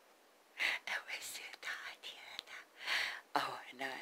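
A person whispering, starting about half a second in, with a brief stretch of low voiced speech near the end.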